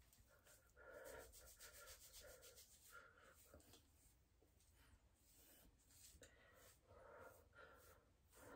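Near silence, with faint, irregular rubbing of fingers working through damp curly hair.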